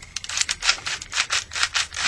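Plastic clicking of the Energon Tidal Wave toy's Minicon mechanism as Ramjet is worked on its midsection peg to move the guns: a quick run of small clicks, about five a second.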